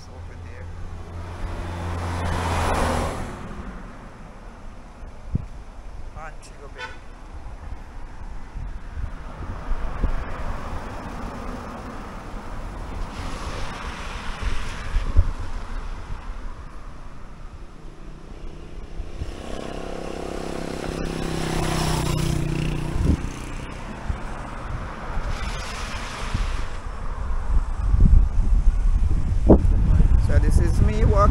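Road traffic: cars passing one after another, each swelling and fading, the loudest about two-thirds of the way through with a low engine drone. Wind rumbles on the microphone near the end.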